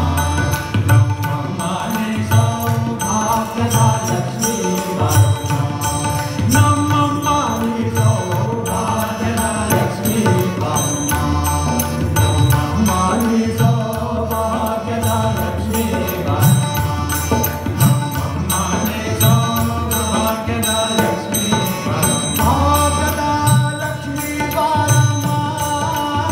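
Live Indian devotional song: a male voice singing a bhajan over tabla strokes, harmonium and a tanpura drone.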